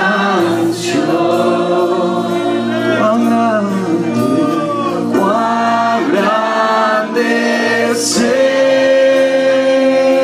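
Church congregation singing a worship song together, with sung phrases that rise and fall and a long note held from about eight seconds in.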